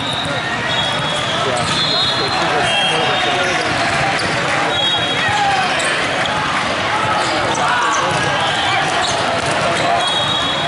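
Busy indoor volleyball hall: many voices talking over each other, with volleyballs being hit and bouncing on the courts and short high sneaker squeaks on the sport-court floor.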